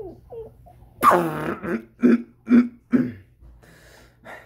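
A child coughing: one harsh cough about a second in, then three shorter voiced coughs about half a second apart.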